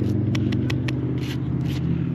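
A steady low mechanical hum, engine-like, runs throughout, with about eight short scrapes and clicks from a hand trowel working sandy soil.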